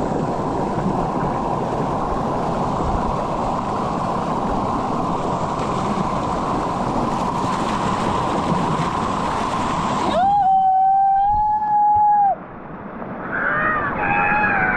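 River water pouring over rocks in a small cascade, a loud steady rush. After about ten seconds the rush cuts out and a single high, steady cry-like tone is held for about two seconds, followed near the end by wavering cry-like sounds.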